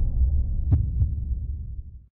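Deep, low rumbling boom of a cinematic logo-intro sound effect, slowly fading, with two short clicks a little after halfway. It ends abruptly at the very end.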